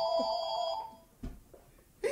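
Electronic telephone ringing tone, a steady warbling note that stops about a second in, followed by a short low thump.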